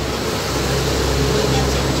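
A steady low hum with a constant hiss over it, unchanging throughout.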